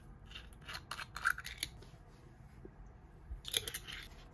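Metal twist cap of a small glass drink bottle being unscrewed by hand: a run of sharp clicks and crackles as the seal breaks and the cap turns, then a second short burst of clicks near the end.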